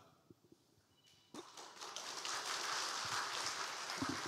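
Congregation applauding, starting suddenly about a second and a half in and continuing steadily.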